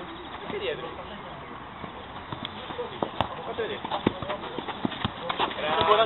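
Five-a-side football on artificial turf: scattered sharp knocks of the ball being kicked and players' feet, under faint players' voices. A man starts shouting just before the end.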